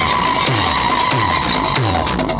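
Loud electronic dance music played through a tall stack of DJ loudspeaker boxes: a sustained high synth tone, drifting slightly down in pitch, held over a repeating bass beat of falling-pitch kicks.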